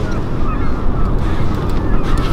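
Boat's outboard motor running at slow trolling speed, a steady low rumble, with wind on the microphone.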